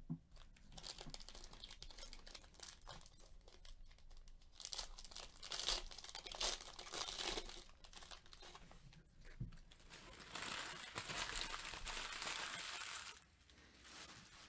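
Foil wrappers of 2018-19 Panini Donruss basketball card packs crinkling as they are handled and torn open, in a few faint bouts, the longest and loudest near the end.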